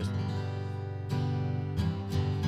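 Gibson J-45 acoustic guitar being strummed: a full chord rings out, and it is struck again about a second in and once more near the end.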